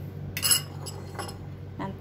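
A single sharp, ringing clink of kitchenware being set down, about half a second in, followed by a couple of faint knocks.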